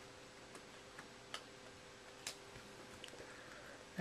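A few faint, sharp clicks, scattered and irregular, of a hard plastic trading-card case being handled and snapped shut on a card, over a faint steady hum.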